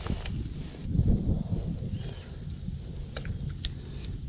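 Footsteps pushing through thick weeds on a pond bank, with rustling and a low uneven rumble, and a few light clicks late on.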